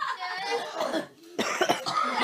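A person coughing, a short run of coughs about one and a half seconds in, with voices in the room.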